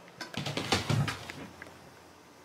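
A quick flurry of taps and thumps lasting about a second: a dog's and a cat's paws scrambling on a wooden floor as the dog drops down flat.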